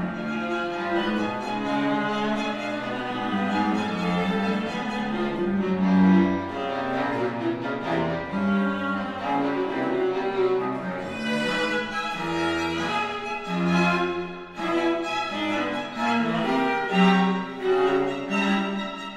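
String quartet of two violins, viola and cello playing forceful, accented, detached notes. From about eleven seconds in the playing turns choppier, with short clipped notes and brief breaks between them.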